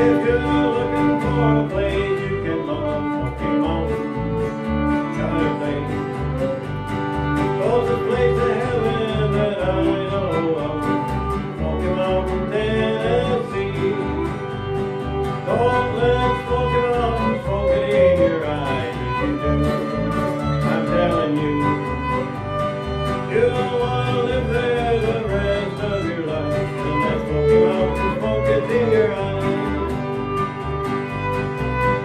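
Country band playing: a fiddle carries the melody over a strummed acoustic guitar and a steady bass line.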